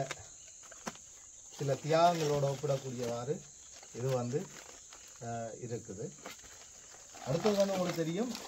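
A man talking in short spells with pauses between them.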